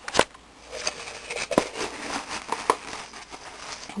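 Light handling noises from a plastic OxiClean tub in a bin of powdered homemade laundry detergent: faint scraping and rustling with a few soft clicks and knocks, one near the start, one about one and a half seconds in and one near the three-second mark.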